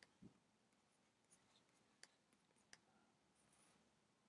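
Near silence broken by a few faint clicks and taps of a stylus writing on a pen tablet.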